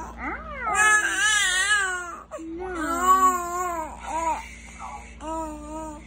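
Young infant cooing and babbling: a few long, wavering vocal sounds, then shorter ones toward the end.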